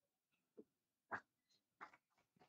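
Near silence, broken by three faint, short clicks or knocks; the one just past the middle is the loudest.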